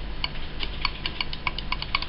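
Snap-action microswitch with its cover off, its plunger pressed over and over so the spring contact snaps across with a quick run of small clicks, about five or six a second.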